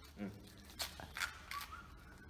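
Mostly quiet: a brief low hum of a man's voice near the start, then a few faint clicks and rustles of handling.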